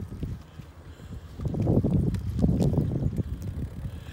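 Wind buffeting the microphone on a moving bicycle, an uneven low rumble that drops away about half a second in and builds again after about a second and a half.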